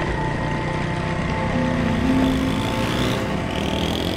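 Small motorcycle engine running steadily as the bike rides along a rough dirt track.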